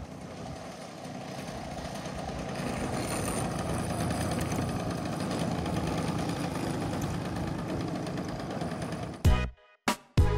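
Radio-controlled aerobatic model airplane's engine idling as the plane taxis, growing louder for the first few seconds as it comes closer. Near the end it cuts off abruptly into upbeat music with a beat.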